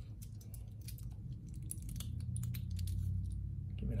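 Stainless steel bracelet of a heavy Invicta Hydromax Reserve watch clicking and clinking as the watch is handled and put on the wrist: a run of small, sharp clicks over a low hum.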